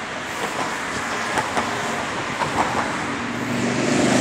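Road traffic running across the Story Bridge deck, a steady rush of cars, with a deeper engine hum from a heavier vehicle building near the end.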